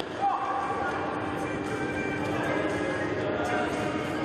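Echoing indoor sports-hall din during a youth futsal match: a mass of distant voices with occasional ball knocks, over a steady low tone.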